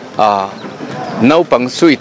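A man speaking into a handheld microphone, with a drawn-out sound early on.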